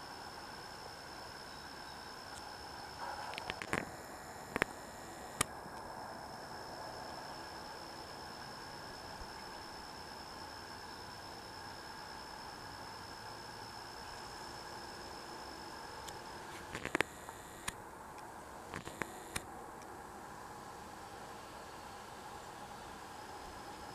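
Steady hiss with a thin, faint high tone that stops about three quarters of the way through. A few sharp clicks, typical of a handheld camera being handled, come around four to five seconds in and again near the end.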